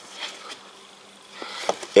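Low steady electrical buzz with a few faint clicks and rustles as a plastic headlight wiring connector is handled.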